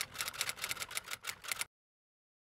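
Typing sound effect: a rapid, even run of typewriter-like key clicks, about seven a second, that cuts off suddenly shortly before the end.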